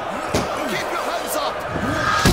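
Fight-scene sound: a heavy slam-like hit about a third of a second in and a lighter, sharper smack about a second later, over shouting voices.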